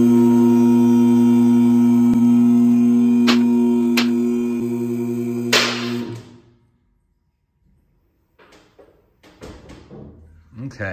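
Electric hydraulic pump motor of a two-post car lift running with a steady hum as it raises the Jeep, with two sharp clicks partway through. It stops with a click about six seconds in.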